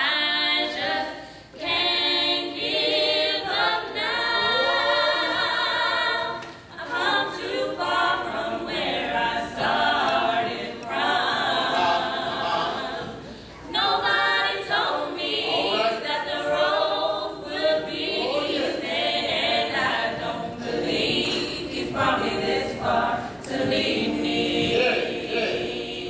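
Female vocal group singing a cappella gospel in harmony, with vibrato on held notes and short breaks between phrases.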